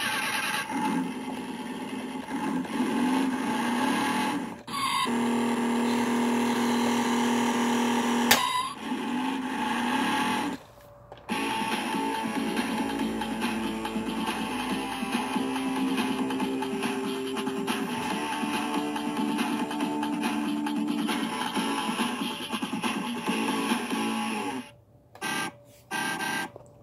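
Road Rippers Wheelie Popper toy car's built-in electronic sound effects, played through an external speaker wired into the toy. The clips are music-like and come in several segments with short pauses between them.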